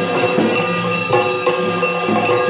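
Yakshagana accompaniment music: drum strokes at a steady beat and jingling small hand cymbals over a steady harmonium drone, with the dancer's ankle bells jingling as he whirls.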